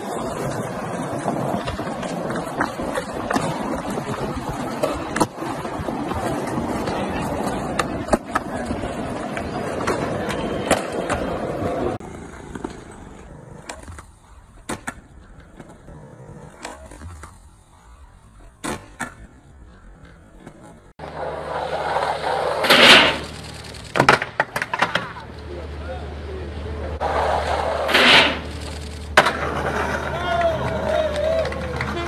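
Skateboard wheels rolling on concrete, with sharp clacks from the boards popping and landing. The rolling is loud for the first twelve seconds or so, fainter through the middle with scattered clacks, and then there are two loud hits near the end.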